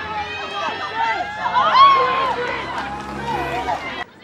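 Several voices shouting and calling over one another at a field hockey match, the loudest, high-pitched shout coming about two seconds in.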